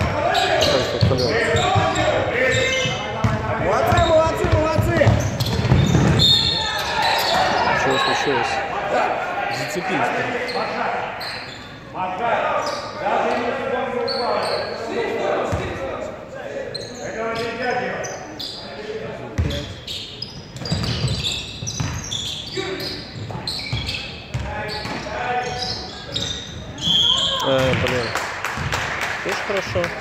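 Basketball game in an echoing gym: a ball bouncing on the hardwood court, with players' and onlookers' voices calling out. A short high whistle blast, typical of a referee stopping play for a foul, comes near the end.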